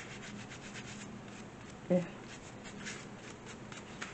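Light, scratchy rubbing of a hand on paper and cardboard, a string of short scrapes, with a brief voice sound about two seconds in.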